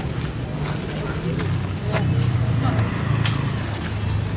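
Background voices of people chatting, over a steady low rumble of road traffic, with a few faint clicks.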